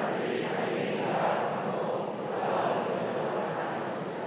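A large congregation reading a Bible verse aloud together in unison, their turn in a responsive reading of scripture. The many voices blend into one steady sound with no single voice standing out.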